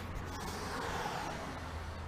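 Air being blown by mouth through a looped length of rubber fuel hose, a soft steady rush. The air passes freely, a sign that the tight bend has not flattened the hose.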